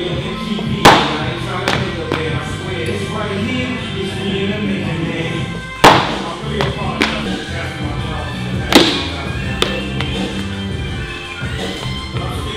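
Background music with a steady beat. Over it come three loud thuds a few seconds apart, each followed by a smaller knock under a second later: a loaded barbell with bumper plates dropped onto a lifting platform and bouncing.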